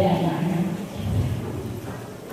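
A woman's voice over a microphone and hall loudspeakers, indistinct and muffled over a low rumble, trailing off toward the end.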